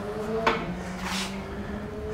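A single short knock about half a second in, over a steady low hum.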